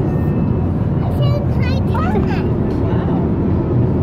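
Steady low rumble of road and engine noise heard from inside a moving car's cabin. A voice cuts in briefly a little over a second in.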